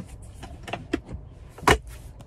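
Center console armrest lid of a 2024 Chevy Traverse being handled with a few light clicks, then shut with a single sharp thump near the end.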